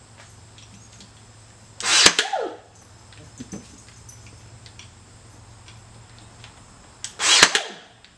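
Ryobi cordless nail gun firing twice, about two seconds in and again about seven seconds in, each shot a sharp bang as it drives a nail into a small wooden piece.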